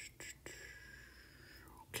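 Faint whispering under the breath, a man reading to himself, with a couple of soft clicks near the start.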